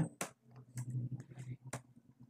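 Computer keyboard keystrokes: about six scattered key clicks, the loudest just after the start and near the end, as a form field is cleared and retyped.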